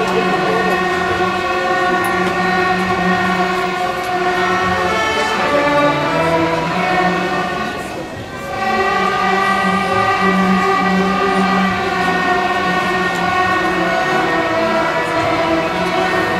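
A student string orchestra playing long held notes together. The sound dips briefly about eight seconds in, then the playing resumes.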